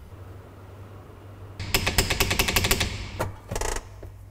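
Rapid mechanical rattling, roughly a dozen sharp strikes a second, starting about one and a half seconds in and lasting just over a second, then two short bursts, over a low steady hum.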